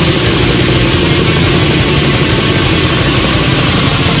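Black metal recording: a loud, dense wall of distorted electric guitars over very fast drumming, steady throughout.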